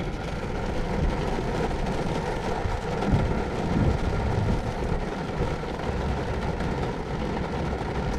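Steady low rumble and hiss of vehicle noise heard inside a stopped car's cabin, with no distinct events.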